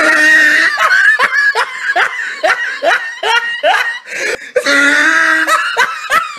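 A person laughing loudly: a long opening cry, then a run of short 'ha' bursts about three a second, and another long held cry near the end.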